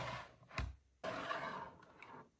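Clear plastic storage drawer of glass ink bottles being handled: a short sharp knock about half a second in, then a brief sliding scrape.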